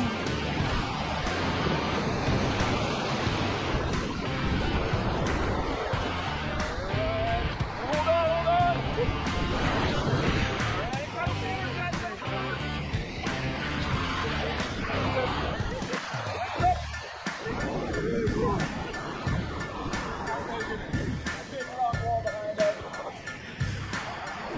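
Background music with a steady beat over the rush of whitewater from a raft running a rapid.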